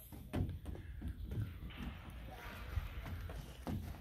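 Faint outdoor background: a steady low rumble with a few brief, faint snatches of voice.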